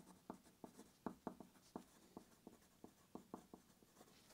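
Wooden pencil writing on paper: faint, short strokes, about four or five a second.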